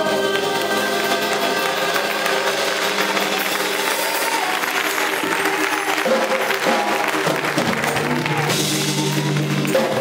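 Live gospel church band playing, with a drum kit and sustained held chords.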